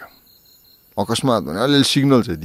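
A man talking, starting about halfway through after a second-long pause in which only a faint, high, steady tone is heard.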